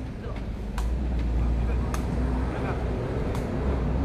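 Sepak takraw ball being kicked in a rally: three sharp hits about a second apart, over crowd voices and a low rumble.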